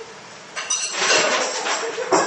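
Clattering and clinking of hard objects, starting about half a second in and loudest around a second in.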